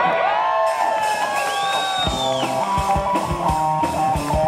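Live rock band: electric guitar notes bending and sliding in pitch for about two seconds, then the drums and bass come in about two seconds in with a fast, driving beat under ringing guitar chords, the start of a new song.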